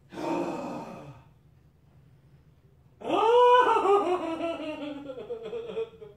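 A man's voice: a short breathy outburst, then about three seconds in a loud, drawn-out wailing moan that rises briefly and then slowly sinks in pitch, wavering as it goes.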